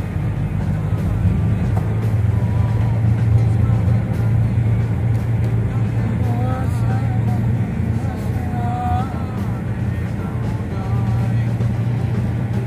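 Steady low drone of a car's engine and tyres on the road, heard from inside the cabin while driving.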